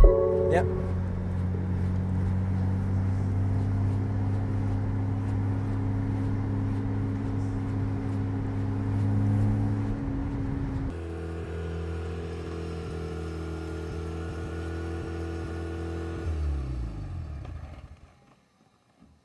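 Mazda RX-7 rotary engine running with a steady drone. After a change about 11 seconds in, it idles steadily, then is switched off near the end, its pitch falling as it winds down.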